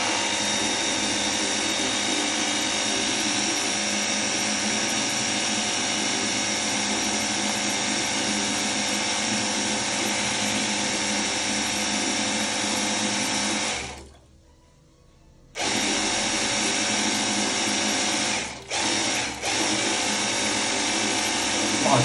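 Cordless battery-powered pressure washer gun running steadily, its pump motor spraying a jet of water into a plastic bucket of water, kept on continuously as a battery runtime test. About two-thirds of the way through it stops for a second and a half, then cuts out briefly twice more a few seconds later.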